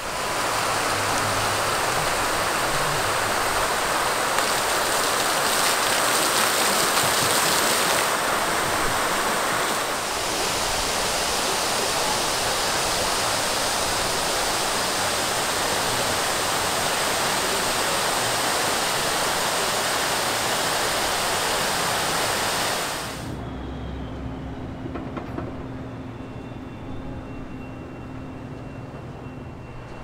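Water cascading down a large tiered fountain, a loud, steady rush that cuts off suddenly about 23 seconds in, leaving much quieter background with a faint low hum.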